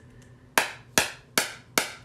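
SoftWave electrohydraulic shockwave therapy probe firing four sharp snaps, about two and a half a second, each spark discharge in the handpiece sending out a pressure pulse.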